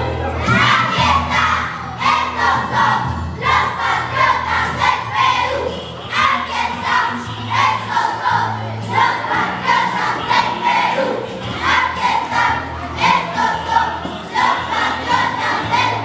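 A group of children's voices singing or chanting loudly in unison, in short repeated phrases roughly every second and a half, over backing music with a steady low bass.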